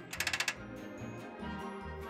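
A tie-down ratchet on a car-carrier wheel strap clicking rapidly as it is cranked tight, for about the first half second, with background music underneath that carries on alone afterwards.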